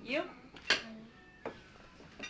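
Tableware clinking at a dinner table: two sharp clinks about a second apart after a brief spoken word.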